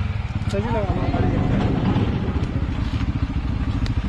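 Motorcycle engine idling with a rapid, even low pulse.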